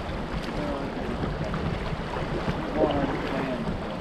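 Fast, shallow river water running over a rocky riffle around a canoe: a steady rushing wash. A person's voice is heard briefly about three seconds in.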